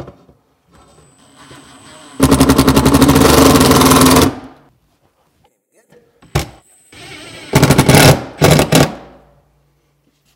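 Cordless impact driver driving screws through a metal drawer rail into a cabinet side panel. A soft motor whirr starts about a second in, then about two seconds of rapid hammering. After a pause and a short blip, two more shorter bursts of hammering come near the end.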